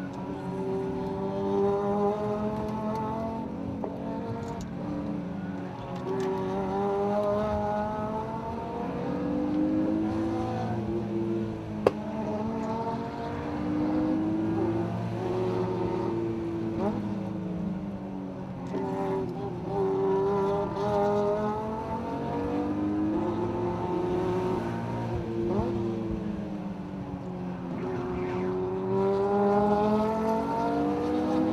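BMW E36 M3's straight-six engine heard from inside the cabin, driven hard downhill with the revs rising and falling every few seconds through the corners. A single sharp click comes about twelve seconds in.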